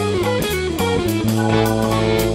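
A jazz-fusion band playing live: electric guitar and bass lines moving quickly over a busy drum kit, with keyboards.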